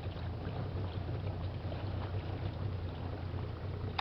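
A small boat's motor running steadily at low, cruising speed, a constant low hum under a steady hiss of water and wind.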